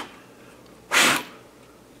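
A single short breath, about a second in, over quiet room tone.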